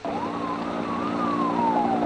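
Firefighting helicopter engine running with a steady low hum and a whine that falls slowly in pitch over the second half.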